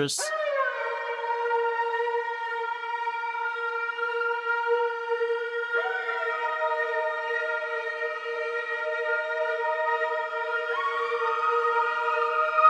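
Siren effect from the Sytrus synth in FL Studio: a sustained electronic tone that glides down into a held pitch at the start, joined by higher notes that slide in about halfway through and again near the end.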